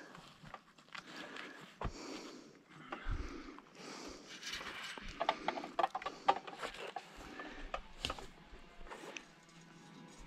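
Faint rustling with scattered clicks and snaps: a person moving through brush and forest debris.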